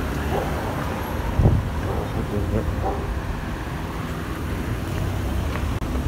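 City street traffic: cars passing on the road with a steady low rumble, rising briefly to a louder swell about a second and a half in.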